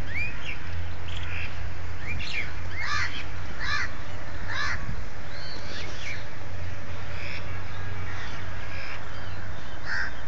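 Crows cawing, a run of short calls one after another, over a steady low hum.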